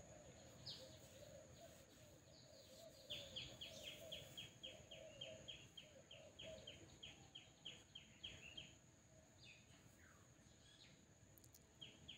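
Near silence with a faint bird call: short chirps repeated rapidly, about three or four a second, for several seconds in the middle.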